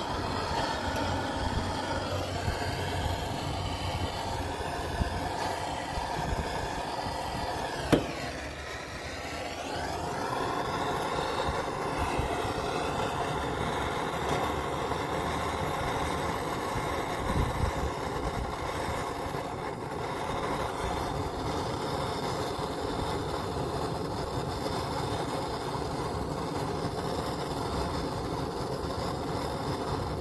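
Steady background noise, a sharp click about eight seconds in, then the steady hiss of a handheld propane torch burning, its flame held on the leather toe of a work boot until the leather catches.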